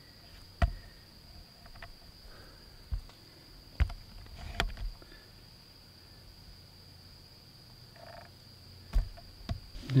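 A steady, thin, high-pitched night insect chorus runs on without a break. A few sharp knocks stand out over it, the loudest about half a second in and shortly before the end.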